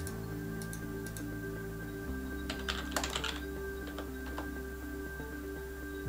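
Typing on a computer keyboard: a quick run of keystrokes about two and a half seconds in, with a few scattered taps before and after, over steady background music.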